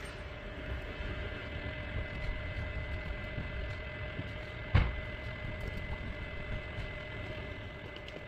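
Steady low mechanical hum with two faint constant whining tones, and a single sharp knock about halfway through.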